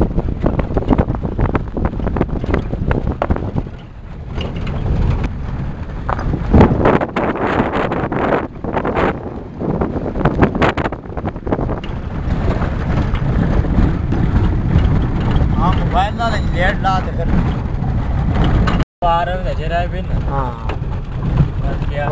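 A vehicle driving on a rough gravel road: a steady low rumble of engine and tyres, with frequent knocks and rattles from the body jolting over stones, heard from inside the cabin. A wavering voice comes in over it in the second half.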